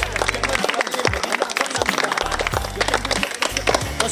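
A small group of people clapping their hands, quick uneven claps throughout, over background music with a steady bass line.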